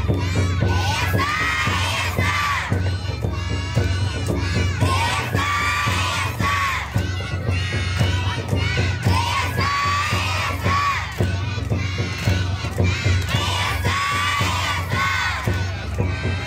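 A group of young children shouting a call in chorus again and again, over a steady beat from the lion dance's drum accompaniment.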